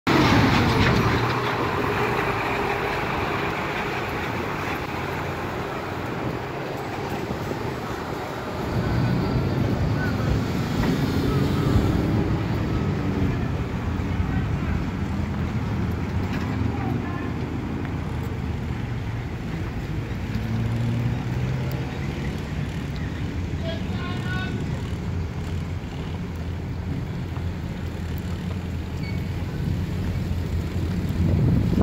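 Road traffic on a town street: car and truck engines running and passing by, a steady low noise that grows louder about nine seconds in.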